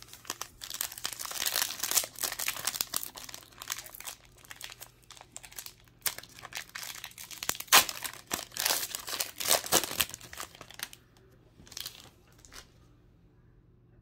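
Foil wrapper of a Topps Gallery baseball card pack being crinkled and torn open by hand, irregular crackling with a few sharper rips. The crinkling stops about three seconds before the end, with one short rustle in between.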